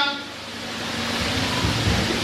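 A steady hiss of background noise that swells over the first second, with a faint low hum underneath.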